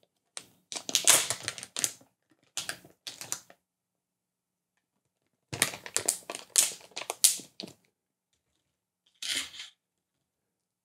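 Plastic packaging crinkling and rustling as it is handled on a table, in four short bursts with silence between. The longest bursts last about two seconds, one early and one around the middle.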